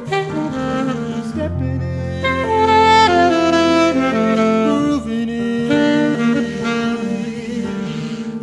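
Alto saxophone playing a melody of long held notes over sustained chords on a Nord Electro 6 HP stage keyboard. It swells to its loudest about three seconds in.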